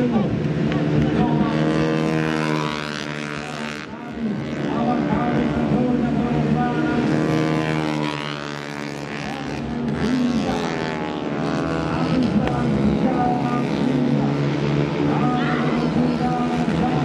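Racing motorcycle engines running at high revs as bikes pass on a track, their pitch climbing and dropping several times through gear changes.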